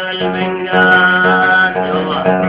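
Music with an oud and accompaniment holding long, steady notes between sung lines.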